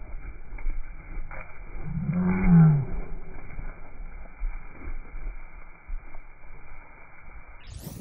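Zwartbles sheep bleating once, a low baa about two seconds in that falls in pitch as it ends.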